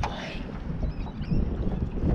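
Wind rumbling on the microphone, with water sloshing at the side of a small boat as a landing net is moved in the water. A brief rush of noise comes right at the start.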